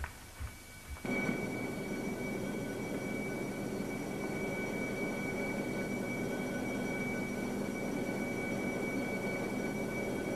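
A steady, droning hum of several held tones over a hiss, starting abruptly about a second in after a few faint thuds.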